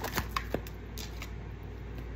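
A tarot deck being shuffled by hand: a quick run of crisp card flicks, then a few lighter snaps about a second in.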